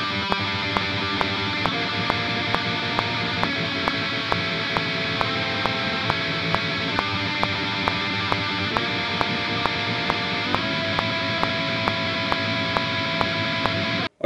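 Distorted electric guitar playing a black-metal chord riff that moves between major and minor triads, in time with a metronome click sounding a bit over twice a second. The guitar and click stop together at the end.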